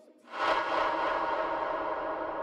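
The beat drops out into a brief near silence, then a single echoing gong-like hit comes in about a third of a second in and rings on, fading slowly.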